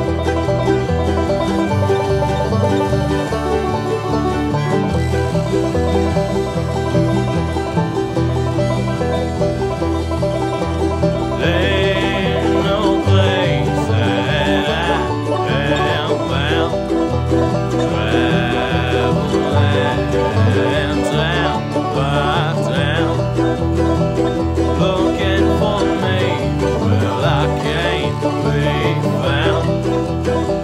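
Bluegrass string band playing an instrumental passage: banjo picking over guitar and a steady low beat, with a higher, wavering lead melody coming in about a third of the way through.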